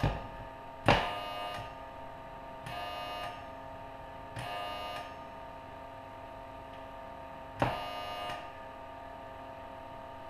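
Tesla coil driver firing its primary into a metal-tray dummy load in four short buzzing bursts of about half a second each, the first and last starting with a sharp click. A faint steady hum runs underneath.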